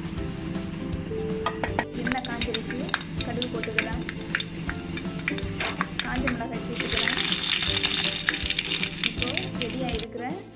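A spatula stirring and scraping the thick beetroot mixture in a pan, with scattered clicks. About seven seconds in, hot oil starts sizzling hard with dried red chillies frying in it for the tempering, and it stops just before the end. Background music plays underneath.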